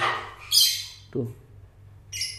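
Patagonian conure giving one short, harsh squawk about half a second in. The bird is panicky while being handled.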